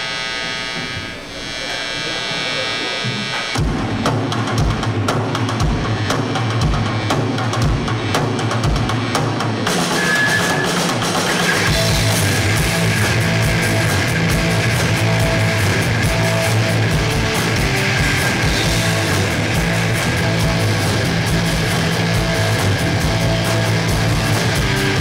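A live rock band starting a song through the stage amplification: after a few seconds of held amplified tones, the drum kit comes in with kick-drum hits about three and a half seconds in, and electric guitars and bass join about ten seconds in to play loud rock.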